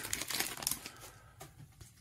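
Trading cards being flicked through in the hands, a scatter of faint clicks and rustles of stiff card stock that die away near the end.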